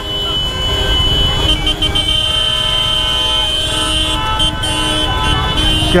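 Several vehicle horns honking in dense road traffic, held tones overlapping one another, over a steady low rumble of engine, tyre and wind noise at the motorcycle's camera.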